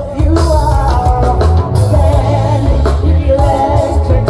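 Live band performance with a woman singing lead into a microphone, over keyboards and a strong, steady low bass.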